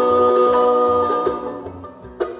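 Bluegrass string band holding a long chord over a steady upright-bass pulse. About a second and a half in, the chord dies away, leaving quieter picked notes.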